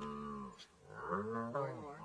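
Two low, moaning animal calls: a short one at the start and a longer one from about a second in.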